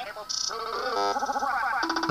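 Cartoon audio from a YouTube Poop edit playing on a screen and picked up by a room microphone: Squidward's voice chopped up and pitch-shifted into stuttering, musical tones that glide upward in the second half.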